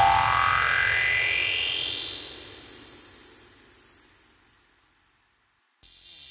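Psytrance track at a break: the beat is gone and a synthesizer sweep rises steadily in pitch over about four seconds while fading out. After a brief moment of silence near the end, the full track comes back in.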